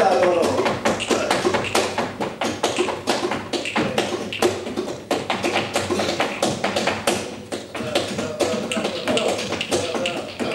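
Flamenco dancer's zapateado footwork: rapid, uneven heel and toe strikes on the stage boards, mixed with the sharp claps of palmas, in a soleá.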